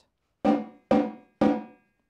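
Marching tenor drums struck three times, about half a second apart, each stroke ringing out briefly with a clear pitch. The strokes demonstrate crossing the sticks at the wrist to reach a drum two away.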